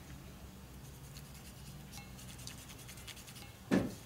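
Faint scratchy rubbing of a dye applicator being worked over a small piece of cowhide leather, over a low steady hum. A single short thump sounds near the end.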